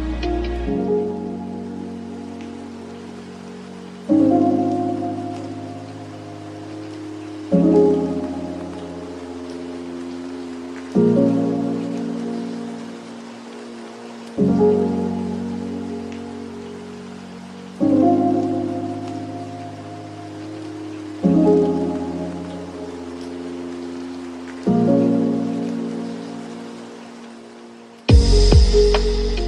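Lofi music in a beatless break: soft keyboard chords, each struck about every three and a half seconds and left to fade, over a steady soft hiss. The drums drop out just under a second in.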